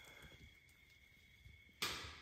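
Dirt and small stones dropped into a deep vertical cave shaft: a faint hush at first, then one sharp knock near the end that fades in an echoing tail as debris strikes rock in the pit.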